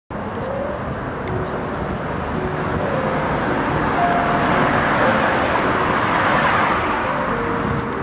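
Street traffic: a steady rush of tyre and engine noise that swells as a car passes, about five to six seconds in, and then eases off near the end.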